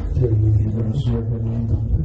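A low-pitched voice talking indistinctly in a small room, over a steady low rumble.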